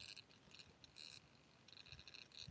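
Near silence: faint background, with a few brief, faint high-pitched sounds.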